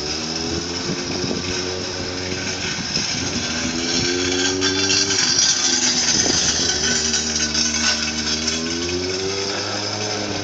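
Triumph TT600 motorcycle's inline-four engine running under throttle while cornering. Its pitch climbs over the first couple of seconds, drops back around four to five seconds, then climbs again from about seven seconds. It is loudest in the middle as the bike passes close.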